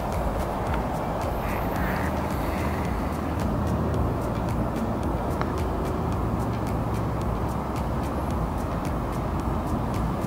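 Wind buffeting the camera microphone: a steady low rumble that hardly changes in level.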